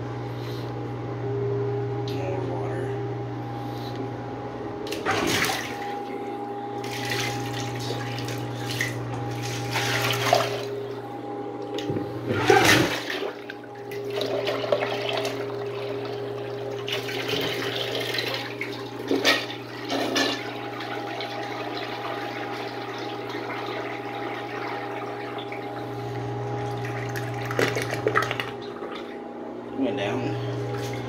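Water running and splashing in a homemade miniature model toilet, with several sharp knocks from handling it, over a steady hum.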